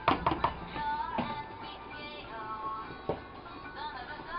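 Background music with singing, over a few short knocks near the start, about a second in and near three seconds in.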